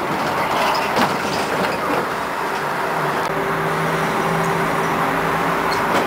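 Konstal 105Na tram running along the rails, a steady rolling noise with a few sharp clicks from the track. A steady low hum from the drive sets in about halfway through.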